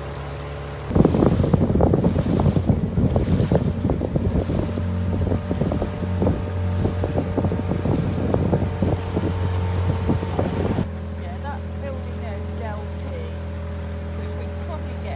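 Outboard motor running steadily, pushing an inflatable boat along. From about a second in, heavy wind buffeting on the microphone covers it, then cuts off suddenly near the end, leaving the steady engine note.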